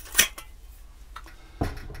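Metal handling sounds as a hand-held LPG torch head is unscrewed from its gas cylinder and the cylinder set down on a wooden table: one sharp click about a fifth of a second in, a faint tick, then a duller knock near the end.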